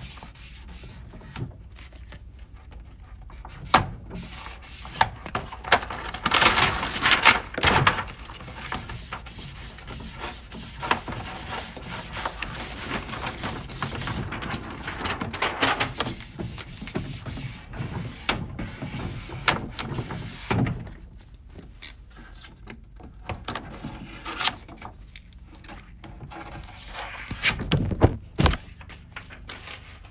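Self-adhesive architectural vinyl film being handled: its paper backing liner rustles and crinkles as it is peeled away, and the film is rubbed down by hand onto a drawer front. The sound is irregular rubbing and crackling with sharp clicks, loudest in bursts about six to eight seconds in and again near the end.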